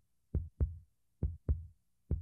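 Heartbeat sound effect: a steady double thump, lub-dub, repeating a little under once a second.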